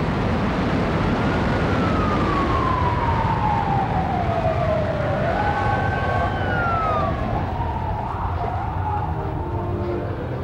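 An emergency vehicle siren wailing, its pitch falling slowly for about four seconds, then rising and falling again, over a loud, steady rumbling noise.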